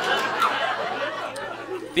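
Audience laughter and chatter after a joke, dying away over about two seconds.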